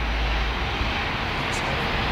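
Steady low background rumble with an even hiss over it, slightly stronger in the first second.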